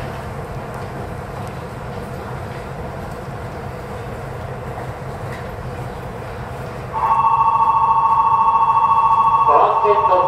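Station platform background with a steady low rumble. About seven seconds in, a loud platform bell starts ringing continuously, and a station announcement voice begins over it near the end.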